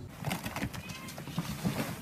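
Storm wind and rain rushing, with rough crackling buffets of wind on a phone's microphone.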